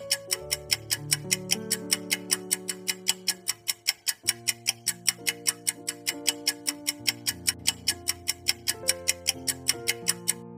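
Countdown-timer sound effect: a clock ticking fast and evenly, about five ticks a second, over a slow backing of held synth chords that change every second or two, marking the seconds left to answer.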